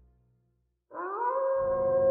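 A wolf howl sound effect starting suddenly about a second in after a moment of silence, sliding up in pitch and then holding one long note, with a low drone of music coming in beneath it.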